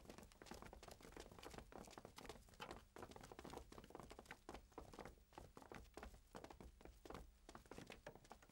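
Faint, irregular patter of footsteps, several soft taps a second.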